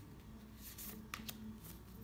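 Tarot cards being handled: cards brushed and slid off the deck and a card laid on the table, faint, with two short clicks a little over a second in.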